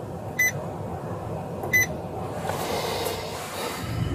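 Two short, high-pitched electronic beeps about a second and a half apart inside a police patrol car, over the steady low rumble of the car. A short rush of hiss follows near the end.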